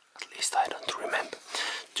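A man's voice speaking softly, close to a whisper, after a brief pause.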